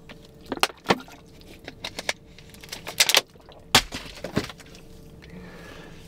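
A scattering of short sharp clicks and crackles from a thin plastic water bottle being handled, the plastic crinkling as it is squeezed and moved, over a faint steady hum in the car cabin.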